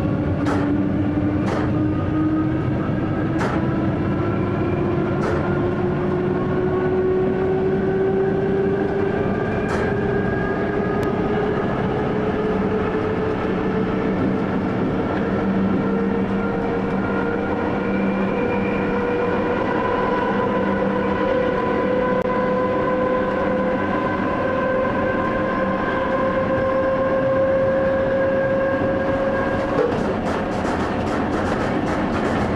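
Electric train's traction drive heard from the driver's cab, its whine rising slowly and steadily in pitch as the train gains speed, over the rumble of wheels on the track. A few sharp clicks sound in the first ten seconds.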